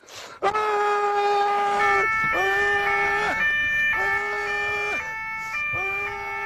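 A siren: a held wailing tone that dips and comes back about every second and a half, with a second, higher steady tone joining about two seconds in.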